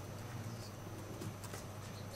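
Faint scattered clicks of a laptop keyboard and touchpad being worked, over a steady low electrical hum.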